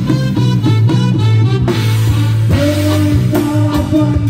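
Live band playing an instrumental passage of a reggae song: drum kit, bass, electric guitars and keyboard. A held melody note comes in about two and a half seconds in.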